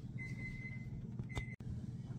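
Faint oven timer beeping: a steady high tone for about a second, then a short sharper beep. It signals that the baked pasta is done.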